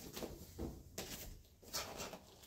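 Faint, soft thumps of bare feet stepping and landing on a foam training mat, with the swish of clothing, as a roundhouse kick is thrown and followed by a punch. There are a few short, light impacts.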